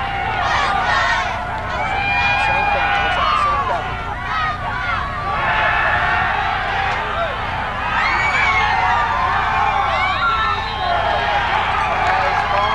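Football crowd in the stands shouting and cheering, many voices overlapping at a steady level.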